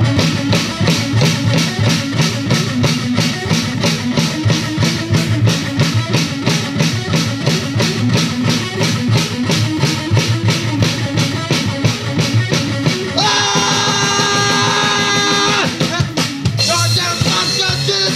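Live punk rock band playing fast, with driving drums and electric guitar. Near the end the drums drop out for about two seconds under one held, ringing chord, then the full band comes back in.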